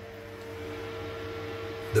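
Small wall-mounted Elicent bathroom extractor fan starting up, a steady hum that grows slowly louder as it spins up. It has just been switched on automatically by a motion-sensor-triggered smart wall switch.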